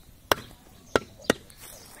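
A butcher's cleaver chopping goat meat on a wooden log block, three sharp chops in quick succession.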